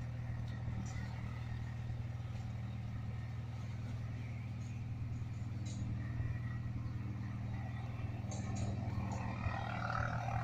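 Steady low engine drone, holding the same pitch throughout, with a few faint clicks over it.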